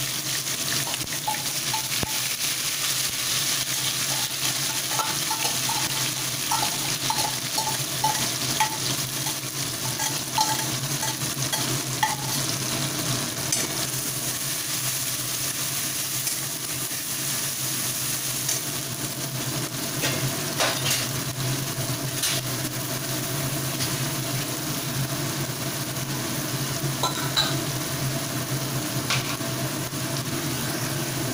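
A wet spice paste sizzling and spitting in hot mustard oil in a kadai, stirred with a metal spatula that scrapes and clicks against the pan now and then.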